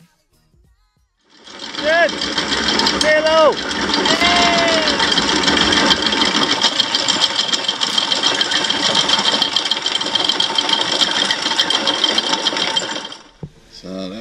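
Anchor chain rattling steadily through the bow fitting of a sailboat. It starts suddenly about a second in and cuts off near the end, with a few shouted calls over it in its first seconds.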